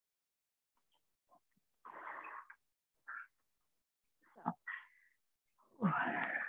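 A woman breathing hard, three short breathy exhales and sighs, out of breath after strenuous squats.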